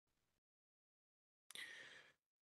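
Near silence: the sound drops out almost completely, with a faint short noise in the last half-second.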